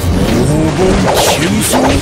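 A man's drawn-out, wavering battle cry, voicing a puppet character calling out his attack, with two whooshing sound effects over it near the end.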